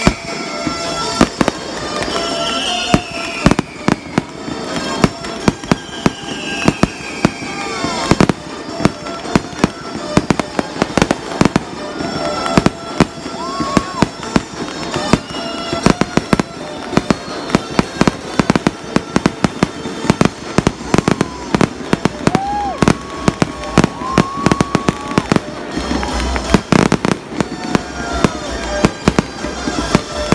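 Aerial fireworks bursting in continuous rapid volleys of loud bangs and crackles. A few high falling whistles sound in the first several seconds, and a deep heavy boom comes late on.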